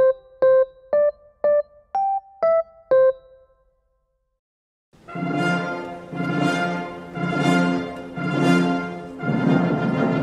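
A simple melody picked out one note at a time on an electronic keyboard with an electric-piano tone, about two notes a second, ending about three seconds in. After a short silence, a fuller recorded music passage with sustained, choir-like sound begins and swells about once a second.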